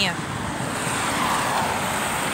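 A car passing by on the road: its tyre and engine noise swells about a second in, then slowly fades.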